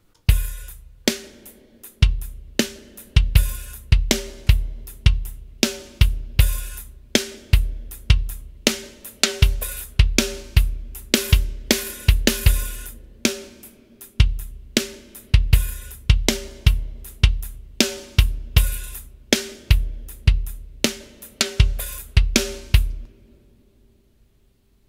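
A programmed drum loop of kick, snare and hi-hats playing back in a steady groove, with a heavily compressed parallel copy of the drums blended under the dry kit, making it sound much bigger. It stops about a second before the end.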